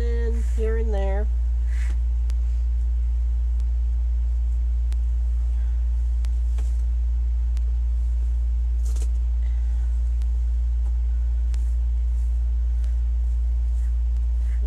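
A steady low hum runs unchanged throughout, with a few faint rustles and light taps from deco mesh ribbon being handled.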